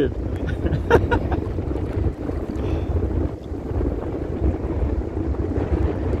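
Wind buffeting the microphone, a steady low rumble over the wash of shallow sea water, with one sharp click about a second in.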